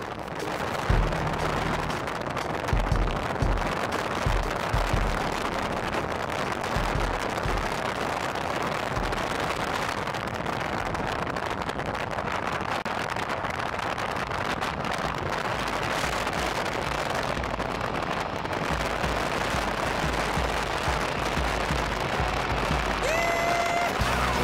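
Wind rushing over the open cockpit of a Polaris Slingshot at highway speed and buffeting the microphone: heavy low thumps of buffeting over the first several seconds, then a steady rush.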